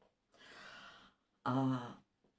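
A woman draws an audible breath in through her mouth, lasting under a second, then makes a short voiced syllable near the end as she starts speaking again.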